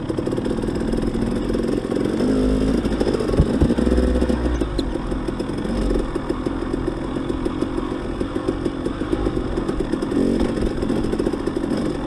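Dirt bike engine running while riding a gravel trail, its pitch rising and falling with the throttle, with rattling clatter from the ride over loose stones.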